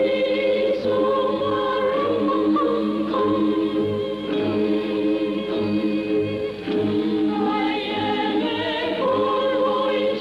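Choir singing sustained chords over a soft, steady low drum beat of about two beats a second: film score music.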